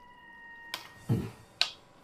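Cutlery clicking against china plates: a few sharp clicks, with a duller, heavier knock about a second in.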